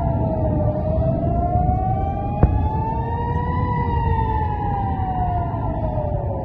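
Air-raid warning siren wailing, its pitch sliding slowly down, rising to a peak a little past the middle, then falling again, over a steady low background noise. A single sharp click sounds about two and a half seconds in.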